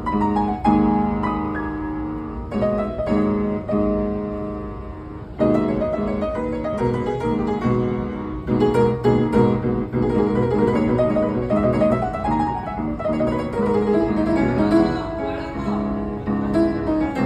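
Upright piano played solo: slow held chords at first, then from about five seconds in a louder, busier passage of quick notes over a deeper bass line.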